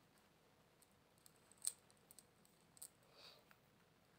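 Hands handling a deck of tarot cards: a few faint clicks, the sharpest about a second and a half in, and a soft rustle near the end.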